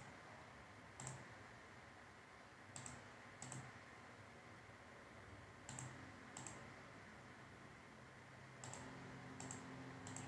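Computer mouse clicking: about seven faint, sharp clicks, several in close pairs, over a faint steady room hum.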